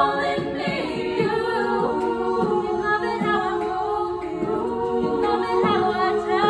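Women's a cappella group singing unaccompanied: several voices hold close chords that shift every second or so, with no instruments.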